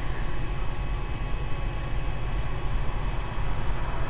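Steady whirring noise with a low hum underneath, typical of a running projector's cooling fan.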